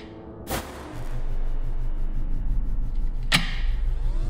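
Sound effects on an edited film soundtrack: two sharp hits with ringing tails, one about half a second in and one near the end, over a low throbbing hum that swells up about a second in.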